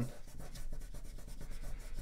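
A sheet of paper being folded and creased by hand: fingers press and rub along the fold, making a dry rubbing with many tiny clicks.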